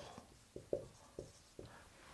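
Marker writing on a whiteboard: a few faint, short taps and strokes.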